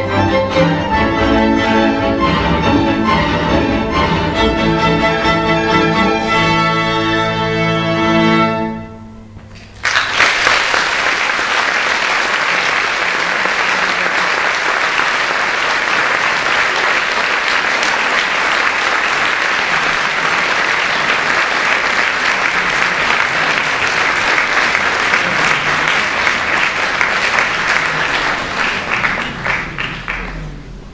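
A string orchestra of violins, cellos and double bass plays the closing bars of a piece, ending about eight and a half seconds in. After a pause of about a second, the audience applauds steadily for some twenty seconds, dying away near the end.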